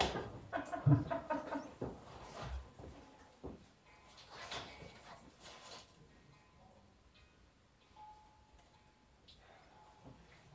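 Water dripping in a limestone cave, giving faint ringing notes like a music box; the clearest is one steady ringing note of about a second near the end. A few knocks and low murmurs in the first two seconds.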